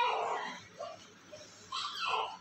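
A newborn baby gives a short whimpering cry that fades out within about half a second, with another brief sound near the end.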